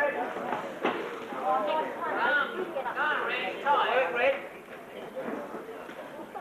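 Indistinct voices of boxing spectators calling out, with a single sharp knock about a second in.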